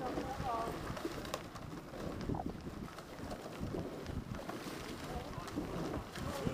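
Bicycle rolling and rattling along a gravel towpath, with wind buffeting the microphone and distant voices calling out now and then.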